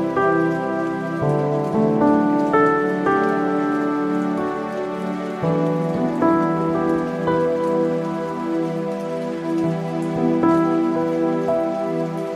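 Instrumental passage of a Filipino pop-rap song with no vocals: held keyboard or synth chords that change every second or so, with faint light ticks high up.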